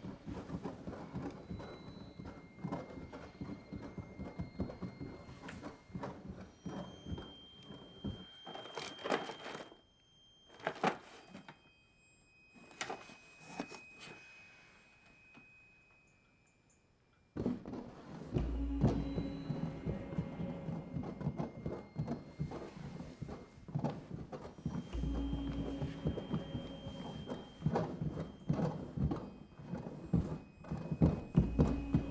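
Horror film score and sound design: tense music with scattered knocks and clicks. It dies away almost to silence, then comes back suddenly with held tones and deep low booms.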